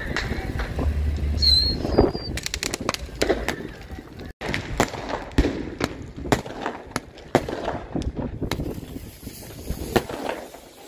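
Fireworks crackling and popping: a quick run of sharp cracks about two and a half seconds in, then single sharp cracks every half second or so until near the end.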